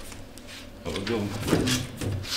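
Large mounted plan boards being slid and shuffled on an easel, giving a few short scraping rustles in the second half, with a brief murmur of voice.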